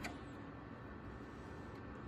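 Faint steady room tone with no distinct sound.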